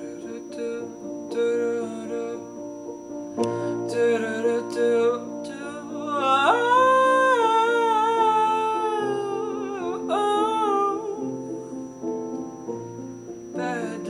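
Piano playing a slow accompaniment while a man's voice sings without words. About six seconds in he holds one high note with vibrato for roughly four seconds.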